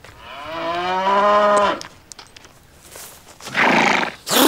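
A cow mooing once: one long, steady call about a second and a half long, rising at first and then held. A short breathy rush comes near the end.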